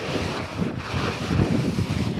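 Wind rushing over the microphone of a moving camera, a gusty, uneven low rumble.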